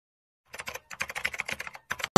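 A quick run of sharp clicks, about ten a second, like fast typing on a computer keyboard, starting about half a second in and stopping near the end.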